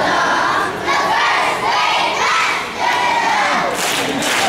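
A class of kindergarten children shouting loudly together, many young voices at once.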